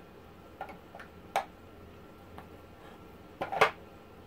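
A few light clicks and taps of hard objects being handled, then a louder cluster of knocks near the end, as one tobacco pipe is set down and the next is picked up.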